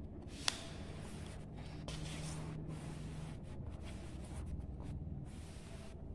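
Faint rustling of a sheet of paper being folded and pressed flat by hand, with one sharp click about half a second in.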